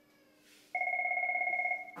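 Office desk telephone ringing: one electronic trilling ring lasting about a second, starting just under a second in.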